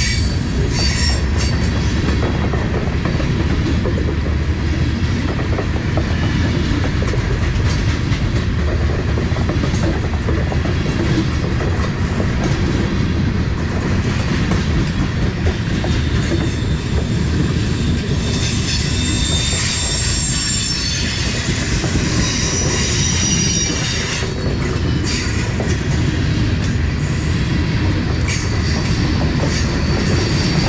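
Loaded covered hopper cars rolling past close by: a steady rumble of steel wheels on rail with scattered clacks and knocks. Thin high-pitched wheel squeal rises over it at times, most plainly about two-thirds of the way through.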